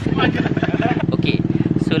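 A small engine running steadily with a fast, even chug.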